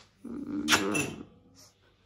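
A short vocal sound, a pitched cry of about a second with a harsh burst in its middle.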